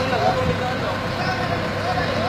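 Forklift engine running with a steady hum, with men's voices briefly over it.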